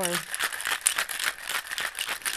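Ice rattling inside a metal cocktail shaker shaken hard in one hand, a rapid, continuous clatter.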